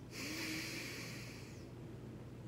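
A man breathing out hard once, a hissing breath of about a second and a half with a faint low groan under it, as he reacts to the strong taste of a spoonful of Vegemite.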